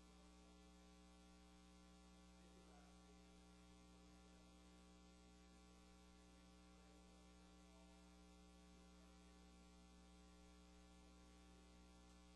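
Near silence with a faint, steady electrical hum, holding one unchanging pitch with its overtones.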